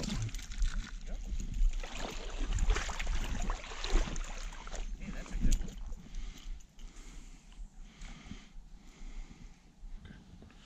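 A small hooked brown trout thrashing and splashing at the water's surface as it is reeled in, then lifted clear of the creek, after which the sound drops to quieter handling and rustling.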